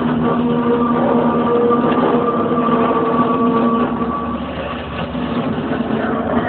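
A loud, steady drone of held low tones over a dense rumble, played through stage loudspeakers in a large hall; it thins out about four seconds in.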